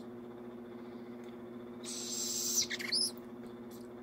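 Barred owl nestling giving one raspy begging hiss about two seconds in, followed by a short squeaky note, over a steady low hum.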